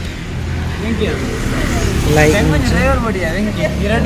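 People talking over a steady low rumble of a vehicle engine running.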